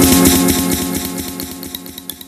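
Tech house music from a DJ mix: a dense, buzzing sustained synth layer over a steady beat fades steadily away, leaving sparse, bright plucked notes near the end.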